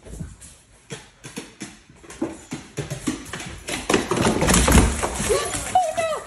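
A dog's paws thumping and clattering on wooden stair treads as it comes down a staircase, irregular knocks that grow quicker and louder about four to five seconds in. Short pitched cries follow near the end.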